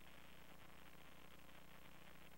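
Near silence: steady faint hiss of room tone.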